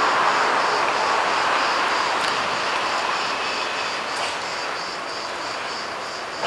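Steady rushing roar of distant engine noise that slowly fades over several seconds.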